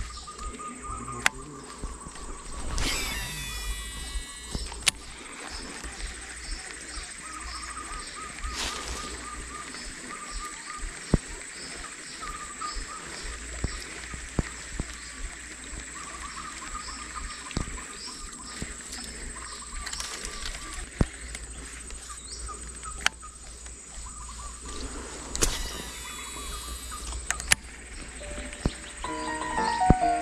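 A Shimano Curado DC baitcasting reel cast twice, about three seconds in and again near the end, each time giving the whine of its electronic braking that sweeps in pitch for a second or two. Between the casts there are sharp clicks from the reel, under steady insect and bird calls. Music comes in right at the end.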